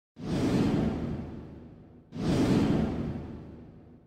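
Two whoosh sound effects about two seconds apart, each coming in suddenly and fading away over a second or so.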